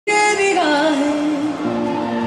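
Male vocalist singing a gliding, ornamented phrase of a Hindi film love song live, over steady harmonium with electric guitar and keyboard accompaniment. The sound cuts in abruptly at the very start.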